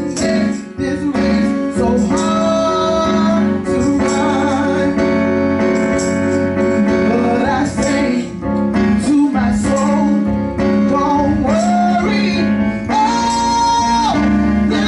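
A woman singing a gospel song through a microphone, her voice sliding and wavering over held keyboard chords.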